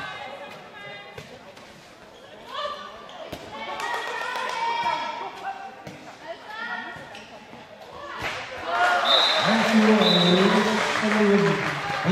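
Handball game in a sports hall: the ball bouncing and slapping on the court amid players' shouts. About eight seconds in, loud crowd noise and shouting swell up, with a high steady whistle-like tone sounding twice.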